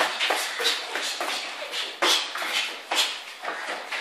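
Boxing sparring in a small room: irregular soft knocks of gloves landing and feet scuffing and shuffling on the ring canvas.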